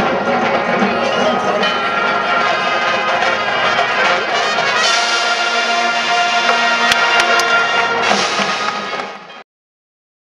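Marching band brass music with many held chords, fading and ending about nine seconds in, then silence.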